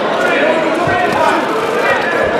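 Spectators' voices and shouts from around the ring, with a couple of dull thuds of boxing gloves landing about a second in.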